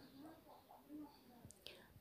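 Near silence, with a faint, indistinct murmur of a voice and a faint tick near the end.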